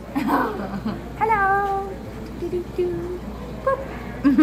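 A person's high-pitched voice: one drawn-out call about a second in that slides down and then holds, followed by a few shorter notes.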